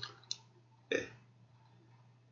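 A man's single short, throaty vocal sound, a grunted "é", about a second in, preceded by a light click; otherwise only a faint steady hum.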